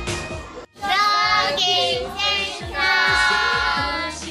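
A music track cuts off abruptly just under a second in. A child's voice then sings a melody over a backing track with a steady drum beat.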